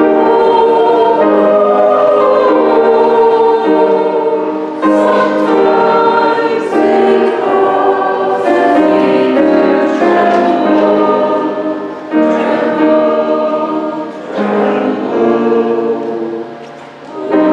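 Small church choir singing a hymn, holding sustained chords in phrases with brief breaks between them.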